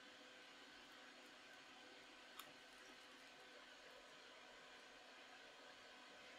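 Near silence: faint steady room hiss, with one faint click about two and a half seconds in.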